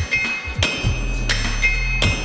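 Steel hammers striking hot iron on a blacksmith's anvil, each blow ringing, about four or five blows in two seconds, often a heavy sledgehammer blow followed by a lighter hand-hammer blow as striker and smith work in turn.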